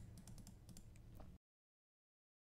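A few faint, quick clicks of computer input (keys or buttons being pressed). The sound then cuts off to dead silence a little over a second in.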